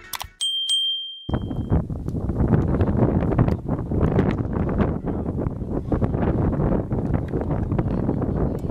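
A single bell-like ding, about a second and a half long, from a subscribe-button animation. It is followed by an outdoor recording of a horse race on a dirt track: wind buffeting the microphone, with irregular thuds from the galloping horses.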